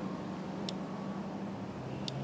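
Steady low hum and hiss of background room noise, with one faint short click about two-thirds of a second in.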